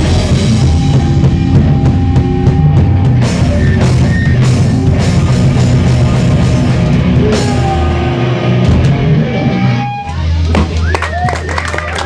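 Loud live rock band: drum kit and electric guitars playing hard. About ten seconds in the drums and the full band stop, leaving a sustained low note and high whining tones as the song ends.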